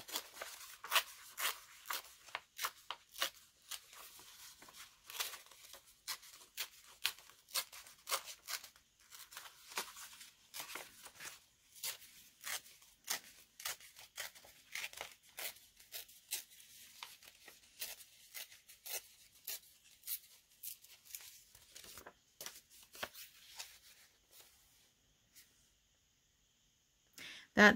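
A thin paper book page torn by hand in many short rips, a picture worked out of the page piece by piece. The tearing thins out and stops near the end.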